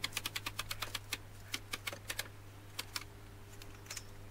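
Ratchet of a Webster mainspring winder clicking as a clock mainspring is let down by its crank: a quick run of sharp clicks that thins out after about a second and a half to a few scattered clicks, over a steady low hum.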